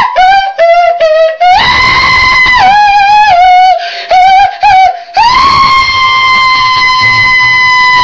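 A man singing loudly in a high falsetto without words: a few short notes, then a run of held notes stepping up and down, ending on one long high note held from about five seconds in.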